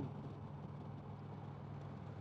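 Indian Chieftain Dark Horse's Thunder Stroke 111 V-twin running at steady highway speed, a constant low hum.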